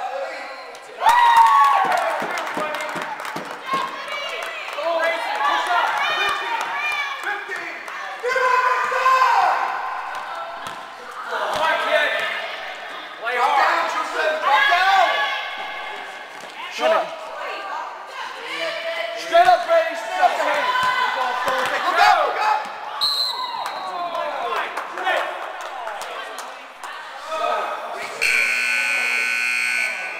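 Basketball game in a gym hall: a ball bouncing on the hardwood floor amid shouting voices of players and spectators, with a steady electronic scoreboard buzzer sounding for about two seconds near the end.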